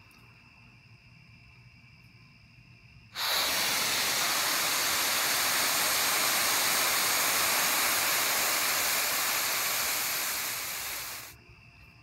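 Homemade stump-remover-and-sugar rocket fuel pellet catching about three seconds in and burning with a loud, steady hiss for about eight seconds, fading out near the end. It is slow to ignite because the piece still holds a lot of moisture.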